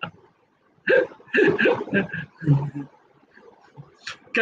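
A man laughing: a brief burst at the start, then a longer run of broken laughter about a second in that dies away by about three seconds.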